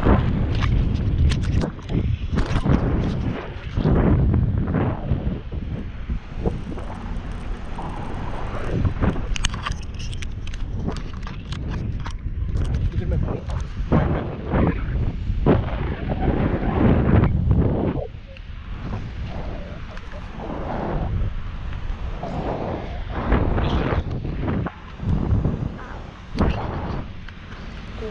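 Wind buffeting a small handheld action camera's microphone high up on a parasail, a loud, uneven rumble broken by sudden gusty blasts.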